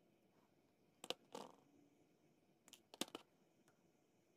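Faint small clicks of steel chain-nose pliers on copper wire as a wire end is wrapped and tucked: a pair of clicks with a brief scrape about a second in, and another cluster of clicks about three seconds in.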